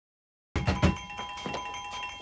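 Electric doorbell ringing with a steady held tone, cutting in abruptly about half a second in, with a couple of knocks on a door as it starts.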